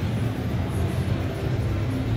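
Steady low rumble of a busy exhibition hall's background noise, with faint music mixed in.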